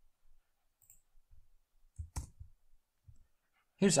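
Faint room tone, then about halfway through a single sharp click from the computer with a few soft low thumps around it. The click runs the Jupyter notebook cell.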